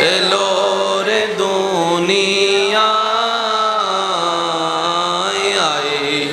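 A man singing a Bangla Islamic devotional song (gojol) into a microphone. He holds long sustained notes and slides down in pitch near the end.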